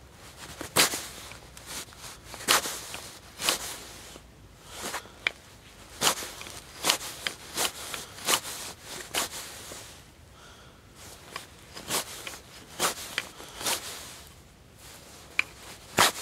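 Knife blade whittling a small piece of wood into a thin, flat wedge: short, sharp shaving cuts at irregular intervals, about one a second, with a brief pause about two-thirds of the way through.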